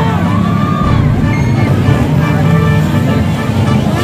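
Dirt bike engines running on a motocross track, with a crowd's voices around them.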